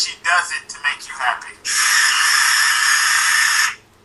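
Electric pencil sharpener running for about two seconds, a steady grinding that starts and stops abruptly, after a few brief voice sounds at the start.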